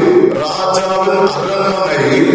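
A man's voice singing in long, held notes, close on a handheld microphone.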